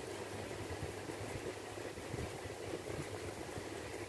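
Steady low rumbling hum of background machinery-like noise, without distinct events.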